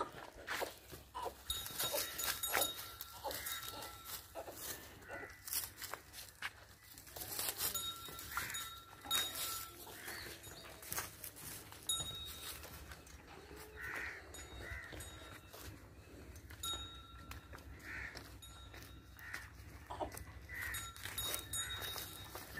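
Quiet farmyard sound: scattered small knocks and rustles from livestock shifting on straw, with short high calls repeating throughout.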